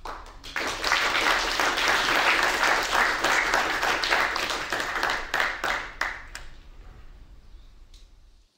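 Audience applauding. It swells about half a second in, holds steady, then thins out and dies away over the last two seconds.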